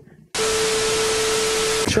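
A burst of loud static hiss with a steady low hum running through it, about a second and a half long, starting and cutting off abruptly.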